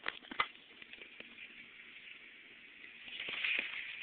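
Handling noise of a phone camera being picked up: a few sharp clicks in the first second or so, then a soft rustle that grows louder near the end.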